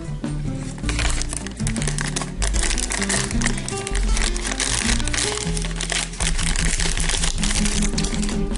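A foil blind bag being crinkled and torn open by hand, the crackling starting about a second in and running on, over background music.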